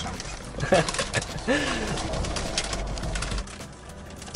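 Crinkling and rustling of a chip bag and a paper food wrapper inside a car, over a steady low hum that fades near the end. A few short hummed or murmured vocal sounds come in the first two seconds.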